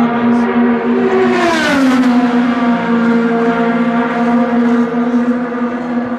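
IndyCar 2.2-litre twin-turbo V6 engines running at speed around the oval in a steady high drone. One car passes about a second and a half in, its pitch falling as it goes by.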